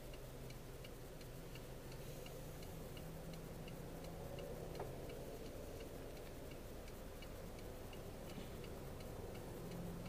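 Car turn-signal indicator ticking steadily inside the cabin, a few even ticks a second, over the low steady hum of the idling or slowly moving car.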